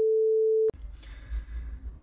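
A single steady electronic beep at one mid pitch, lasting under a second and cutting off abruptly, then faint room tone. It is an edited-in bleep that replaces the speech, covering the name the speaker was about to say.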